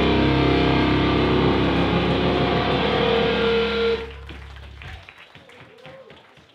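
Live hardcore band playing loud distorted guitar and bass, held on a ringing chord, then cutting off abruptly about four seconds in. Faint scattered noises follow and fade out.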